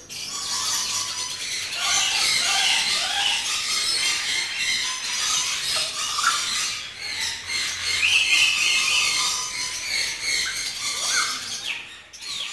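Lories squealing and chattering: a steady run of high squeals and short rising calls, with a louder drawn-out squeal about eight seconds in.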